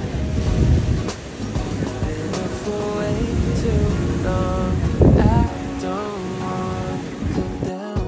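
Ocean surf breaking and washing on a sandy beach, with wind buffeting the microphone, under background music whose melody grows plainer in the second half.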